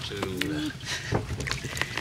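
Hands sorting through wet weeds and debris heaped on a fishing net, giving scattered small clicks and rustles. A person's voice is heard briefly near the start.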